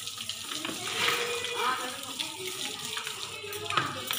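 Water spraying from a garden hose onto buffaloes as they are washed down, a steady rush and splash of water.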